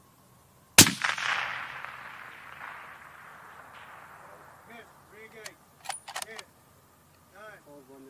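A single rifle shot about a second in, its report echoing and dying away over about three seconds. Faint voices and a few sharp clicks follow a little after the middle.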